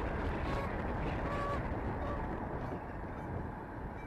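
Steady wind and road rush on a camera mounted on the front of a moving car, with two faint short honks from a Canada goose flying alongside, about half a second and a second in.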